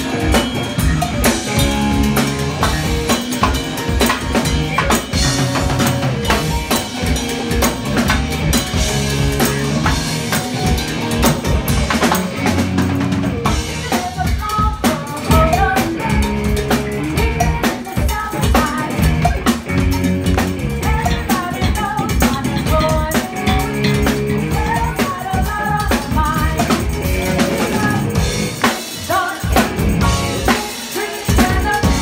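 Live band playing an upbeat dance number, driven by a busy drum kit with snare and rimshot hits and hand percussion.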